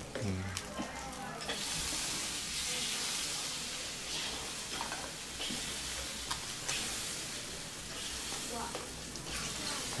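Bánh khọt batter frying in oil in multi-cup pans: a steady sizzle, with a few faint clicks.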